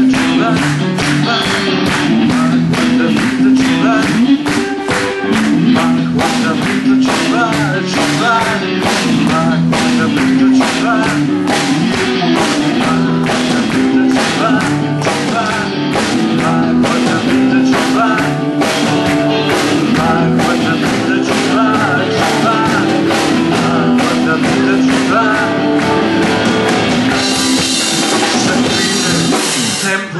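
Rock band playing live: amplified electric guitars over a drum kit keeping a steady beat.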